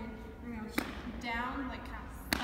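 A woman's voice, vocalizing without clear words, with one sharp slap about a third of the way in.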